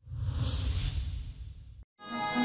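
News-bulletin transition sound effect: a whoosh over a deep rumble. It starts abruptly, the hiss fades, and it cuts off shortly before the end.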